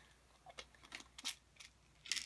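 A few faint, short clicks and rattles of a small container of tablets being handled to get a pill out.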